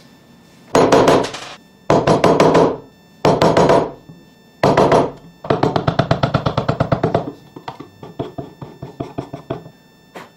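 Wood chisel cutting into a block of wood clamped in a metal vise: four short bursts of rapid clicking, then a longer run of clicks that thins out into scattered separate taps.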